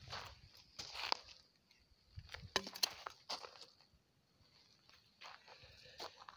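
Faint, irregular footsteps crunching on dry soil and dead grass stubble, with a few scattered clicks and crackles.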